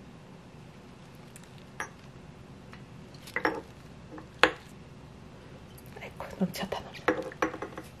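Scattered clinks and knocks on a glass jar as celery pieces are pushed down into it by hand. A few light ones come first, a sharp knock about four and a half seconds in is the loudest, and a run of lighter taps follows near the end.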